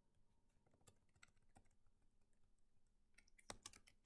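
Faint, scattered clicks of keys being typed on a computer keyboard, with a quick run of louder clicks about three and a half seconds in.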